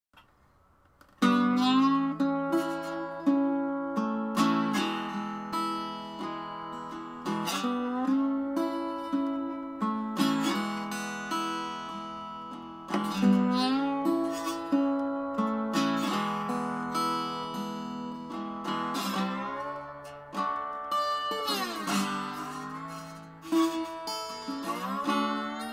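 Small acoustic travel guitar played slide-style with a glass wine bottle as the slide: fingerpicked notes and chords that ring and fade, joined by gliding slides in pitch. The playing starts about a second in.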